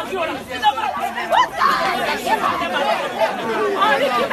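Several people talking over one another in a heated exchange, voices overlapping without a break.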